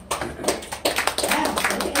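A round of applause from the audience: many hands clapping together, unevenly and densely.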